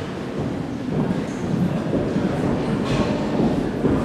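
Audience applauding in a large gymnasium, a dense, echoing clatter that grows louder about a second in.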